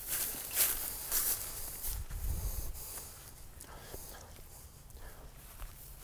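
Footsteps of several people walking through dry grass, soft and fading away over the first few seconds.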